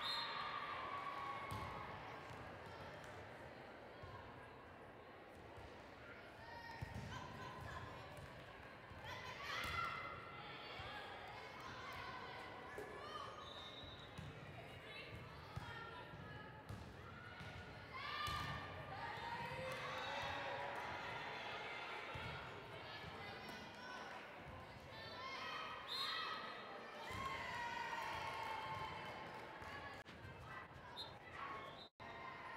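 Indoor volleyball rally: sharp thumps of the ball being served, passed and hit, with players' short shouted calls and background voices echoing through a large sports hall.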